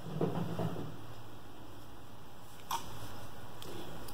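Mostly quiet room tone with faint handling sounds from a crochet hook and cotton yarn: soft rustles in the first second and one small click a little before three seconds in.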